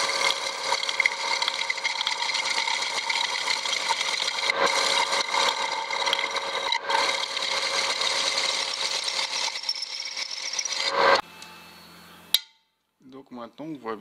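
Metal lathe turning the crown onto a 250 mm steel pulley rim, the tool feeding at a one-degree angle: steady cutting noise with a high whine. About eleven seconds in the cut stops, leaving a low hum, then a single click.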